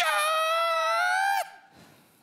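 A man's long, high-pitched shout, held on one note for about a second and a half and then cut off.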